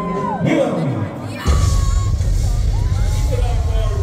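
Live hip-hop performance through a festival PA: a rapper's vocal over a loud beat, with crowd noise. The bass drops out and comes back in about a second and a half in.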